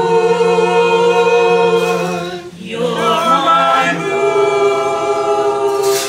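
A small mixed group of voices singing a four-part barbershop tag a cappella, with the parts doubled. They hold two long chords, with a brief break for breath about two and a half seconds in.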